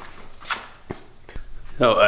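Three brief clicks or knocks, a little under half a second apart, over a quiet background, followed near the end by a man's voice.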